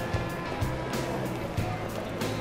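Background pop music with a steady bass beat, about two beats a second.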